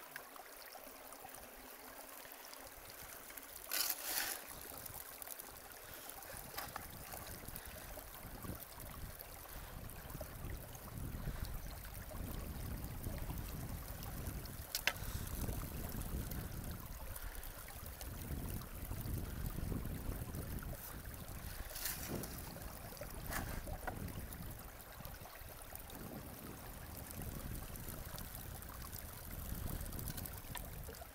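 Water running steadily down a gold-panning sluice box and over its riffles, carrying fine gravel, with the river's flow around it. The rush grows deeper and a little louder after about ten seconds, and a few short clicks stand out.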